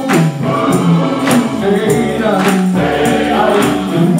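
Men's gospel choir singing with band accompaniment, over a steady percussive beat with tambourine and hand claps.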